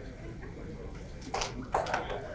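A pause in talk over a hall's amplified sound system: steady low hum with faint voices, and two short hissing sounds near the end.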